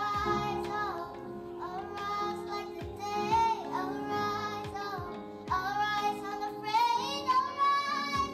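Young girls singing a melody with held, gliding notes over instrumental accompaniment.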